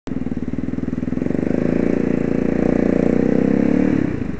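A motor vehicle engine running close to the microphone with a rapid, even pulse, getting louder and rising slightly in pitch as it accelerates.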